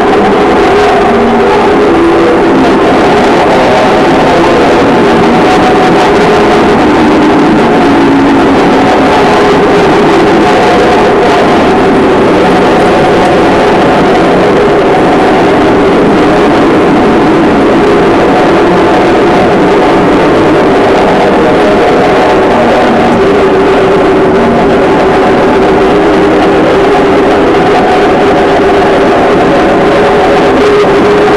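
Live noise music: a loud, dense, distorted drone with several wavering tones held over a wall of noise, unbroken and unchanging in level.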